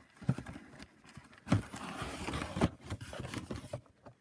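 Boxed Funko Pop figures being pulled out of a cardboard shipping carton: three dull cardboard knocks a little over a second apart, the middle one loudest, with scraping and rustling of the boxes against each other and the carton.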